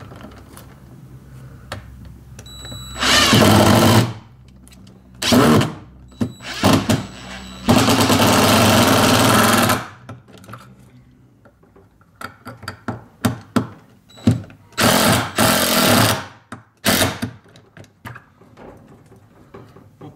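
Cordless drill driving long screws through a wooden shelf bracket into the wall, in several runs: about a second near the start, one of about two seconds in the middle, another of a second or so later, with a few short blips and light clicks between.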